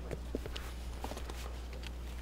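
Faint rustling and a few light knocks as a person picks up a paper leaflet and sits down on a chair, over a steady low rumble.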